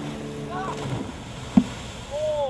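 Tow boat's engine running with a steady hum over the rush of its wake, fading out about halfway through. A brief shout comes near the start, and a single sharp knock sounds late on.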